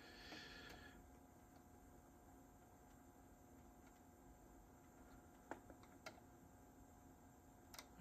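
Near silence: room tone with a few short, faint clicks, two around five and a half and six seconds in and one near the end.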